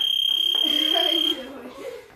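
Gym interval timer sounding its round signal: one long, high, steady electronic beep that cuts off about a second and a half in. A man's soft laugh runs under and after it.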